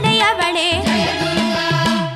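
Tamil devotional song music: a melody that bends and wavers in pitch over a repeating bass line and rhythmic percussion.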